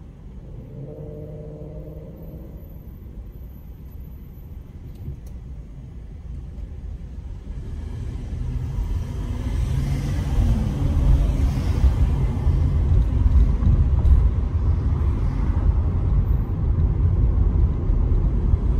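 Car engine and road noise: a quiet low rumble while stopped at first, then growing louder from about eight seconds in as the car pulls away and gathers speed.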